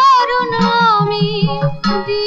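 A high female voice sings a Bengali film song melody with a wavering vibrato, over a steady tabla beat.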